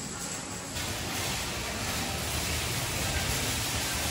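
Steady, hiss-like background noise of an indoor public space with no distinct event in it. It becomes fuller and brighter about a second in.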